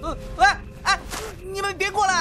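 A young man's voice giving several short, high, gasping yelps and whimpers, coming faster toward the end, in a show of fright.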